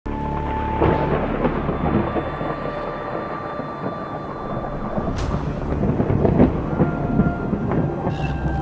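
Thunder rumbling over rain, a storm sound effect laid under held music tones, with one sharp hit about five seconds in.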